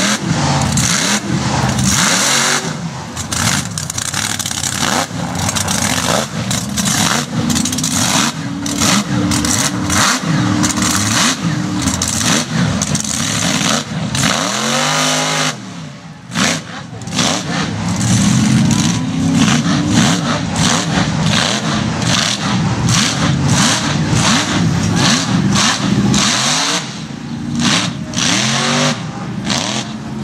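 Mud truck engine revving hard in repeated rising and falling surges as it drives through a mud pit, easing off briefly about halfway before revving up again.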